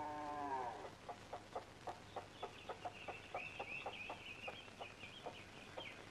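Hen clucking faintly in short, evenly spaced clucks, about three a second, with high chirping peeps over it from about two seconds in. It opens with a held animal call that drops in pitch as it ends.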